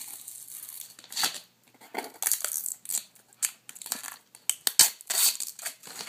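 Protective plastic film on a new external hard drive crinkling and tearing as it is handled and peeled off the casing: irregular bursts of rustling with short gaps, the loudest about five seconds in.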